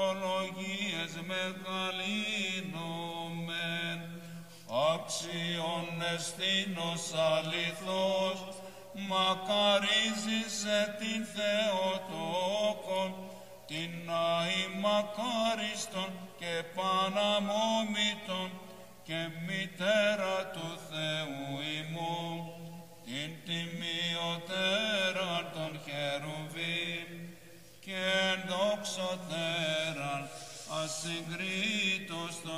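Byzantine chant: a single man's voice chanting a slow, melismatic Greek Orthodox hymn in long, winding notes, with brief pauses for breath every few seconds.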